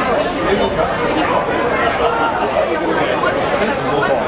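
Spectators chattering: many overlapping voices talking at once, steady throughout, with no single voice standing out.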